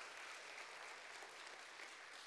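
Congregation applauding in a large room, faint and slowly dying away.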